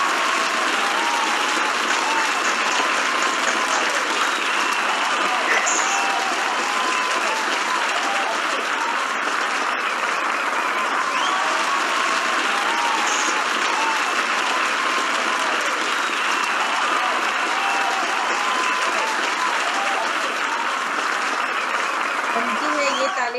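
Sustained applause from many people clapping, steady and even throughout, with faint voices mixed in.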